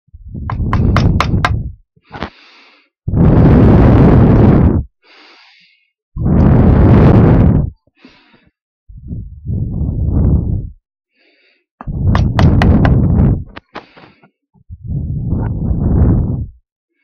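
A hand tool working wood clamped in a bench vise: six loud bursts of scraping and knocking, each about one and a half to two seconds long, coming every few seconds. Some bursts carry sharp clicks.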